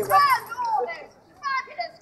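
High-pitched children's voices calling out in short, rising and falling bursts, with gaps between them, as drum music stops at the start.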